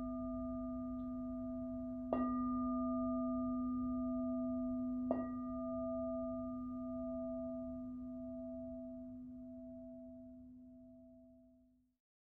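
A singing bowl struck twice, about two and five seconds in, over a tone already ringing from a strike just before. Its steady low tone and a higher, slowly wavering overtone ring on and fade away near the end.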